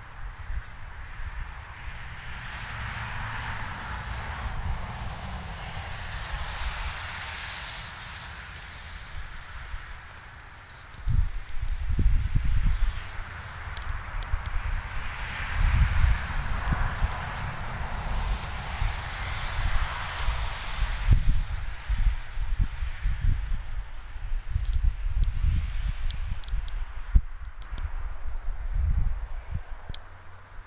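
Wind gusting through dry grass and brush, swelling and fading in waves. From about a third of the way in, irregular low rumbling from wind buffeting and handling on the microphone is the loudest sound.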